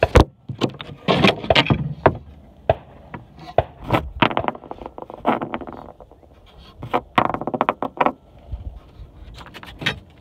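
Handling noise from a phone being moved about with its lens covered: a sharp knock right at the start, then a string of irregular knocks, scrapes and rustles.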